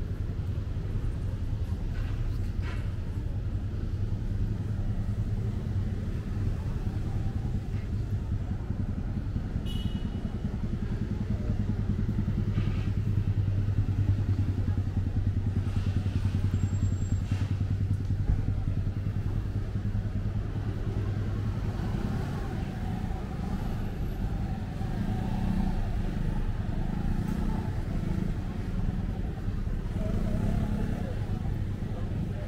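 Street traffic ambience: a steady low rumble of cars and motorcycles on the road, growing louder for several seconds in the middle.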